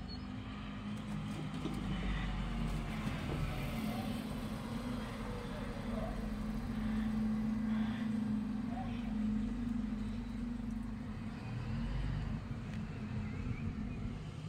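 Refuse truck's engine running steadily in the street, a low drone with a steady hum that swells a little around the middle and eases again.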